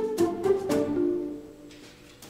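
Background film-score music: a short melodic phrase of pitched notes that dies away over the second half.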